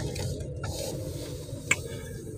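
Low, steady rumble inside a car cabin, with a single short click near the end.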